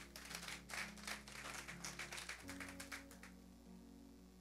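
Congregation applauding, a quick patter of many hand claps that dies away a little after three seconds, over soft sustained chords of background music that shift to a new chord about halfway through.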